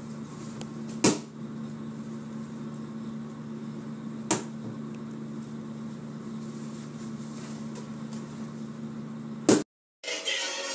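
A steady low hum on two pitches, with three sharp knocks: about a second in, a little past four seconds, and near the end.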